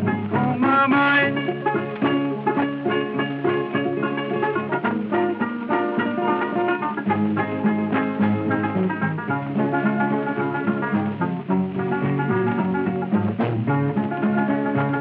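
Instrumental break of an old-time string band, with plucked strings (guitar and banjo) picking a fast, busy run between sung verses. It comes from an old shellac record transfer, so it sounds dull, with no high treble.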